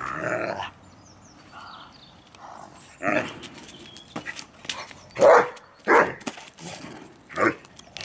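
Irish wolfhounds barking and growling in play, a handful of short barks with the loudest two about five and six seconds in.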